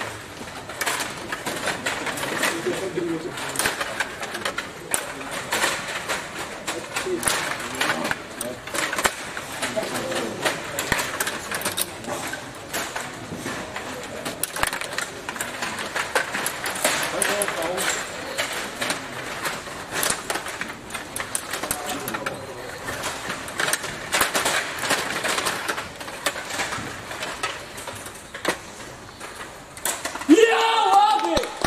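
Stiga Play Off table hockey game in play: rapid, irregular clicking and rattling of the players' rods and plastic figures, with sharper knocks as the figures strike the puck, under a background murmur of voices.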